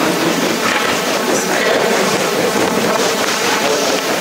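A chamber full of people rising from their seats: a steady din of chairs shifting and bodies moving, with scattered clatter.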